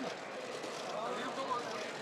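Indistinct voices of several people talking, over a steady background hubbub.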